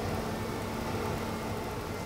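Steady background hum over a low rumble and faint hiss, even throughout with no distinct sounds.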